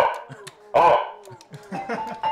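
A man's voice shouting through a handheld Fanon megaphone: two short shouts, the second about three-quarters of a second after the first.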